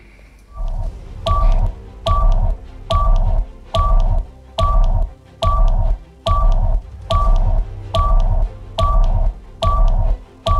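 Closing-theme countdown music: a steady repeated beat, each stroke a deep thump with a short electronic beep on top, about one and a half strokes a second.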